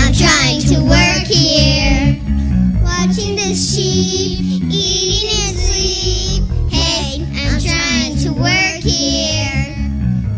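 A group of young children singing a song in phrases over an instrumental accompaniment with a steady bass line.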